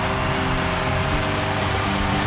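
Arena music playing sustained chords that shift a couple of times, over the steady noise of a crowd cheering a home goal.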